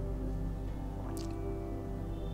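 Soft instrumental background music with steady held tones, and one brief click a little over a second in.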